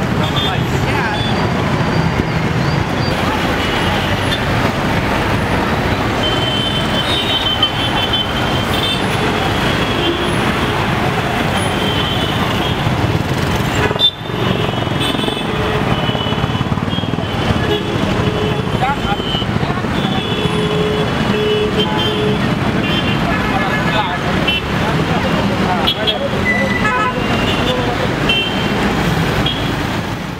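Busy street traffic running steadily, with vehicle horns tooting again and again over it. There is a brief break about halfway through.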